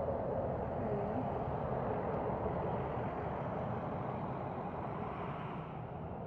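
A passing road vehicle: steady tyre and engine noise that swells early on and slowly fades away.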